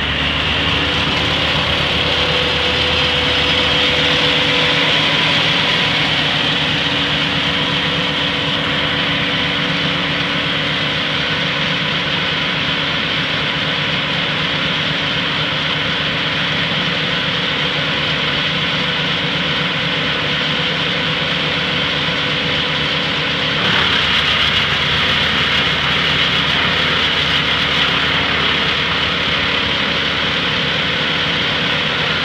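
Morbark towable wood chipper running steadily at speed. About three-quarters of the way through the sound steps up and grows louder and noisier as branches are fed in and chipped, with chips blowing out of the discharge chute.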